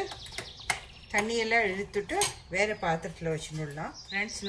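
A metal spoon clinking against the side of a stainless steel pot of boiling rice as it is stirred, several sharp clinks close together in about the first second.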